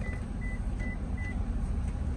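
A string of short, evenly spaced, high electronic beeps, about two and a half a second, stopping a little over a second in, over a low steady rumble.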